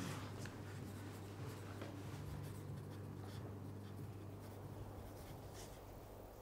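Faint scratching of handwriting on notebook paper, short strokes scattered throughout, over a steady low hum.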